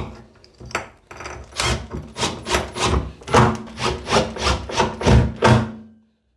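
Cordless drill driving a screw through a grab rail's mounting plate into the timber stud behind the tiles, the screw grinding in with a run of pulsing bursts about three a second that stop suddenly as the screw seats, near the end.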